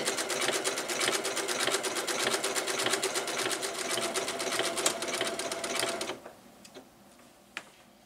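Domestic sewing machine running fast through a tight satin zigzag stitch, with rapid, even needle strokes. It stops abruptly about six seconds in, as the top thread breaks; a couple of faint clicks follow.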